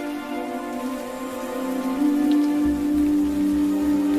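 Steady rain falling, mixed with a sustained background music chord that swells about two seconds in; a low pulsing rumble joins near the end.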